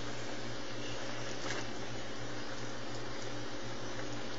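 Cream sauce simmering in a skillet: a steady, even hiss with a low hum underneath.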